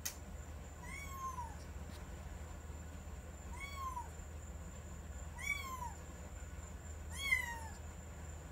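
A kitten meowing four times, short high calls that each rise and then fall in pitch, spaced a second or two apart.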